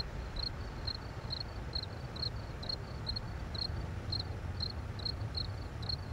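A cricket chirping steadily, about two short chirps a second, over a low steady background rumble.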